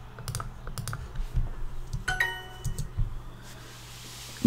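Computer mouse clicks, several in quick pairs, as word tiles are picked and the answer is checked in the Duolingo app. About two seconds in, a short bright chime rings: the app's correct-answer sound.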